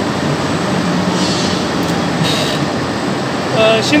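Single-phase capacitor-run induction motor running steadily on the bench, with a continuous hum and whir. It is turning clockwise after its main-winding leads were reversed.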